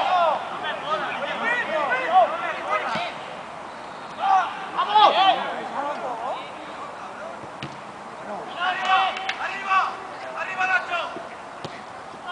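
Voices shouting across an outdoor football pitch during play, calls coming in bursts, with a couple of brief sharp knocks of the ball being kicked.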